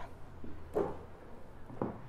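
The wooden sliding key cover (fallboard) of a Yamaha Clavinova CLP-430 digital piano is slid closed over the keys, with a soft knock near the end as it comes to rest.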